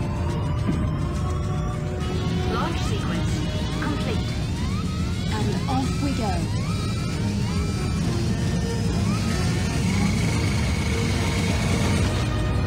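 Film soundtrack: music over a steady low rumble of the launch machinery as the island's pool slides back to open the launch bay. Short voice sounds come through the mix about three to six seconds in.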